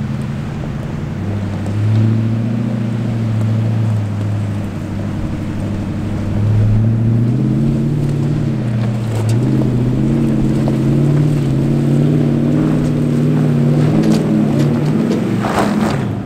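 Toyota 100 series Land Cruiser's V8 engine running in low range as the four-wheel drive crawls up a rutted rock step. Its revs rise and fall in steps, climbing about halfway through.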